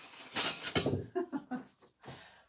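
A woman's soft laugh and unintelligible murmur, over a short rustle of paper being handled.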